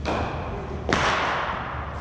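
Two sharp impacts of cricket balls about a second apart, the second louder, each ringing on in the long echo of a large indoor net hall.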